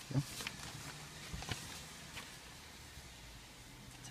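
A few brief rustles and clicks from papers being handled, over a faint steady low hum.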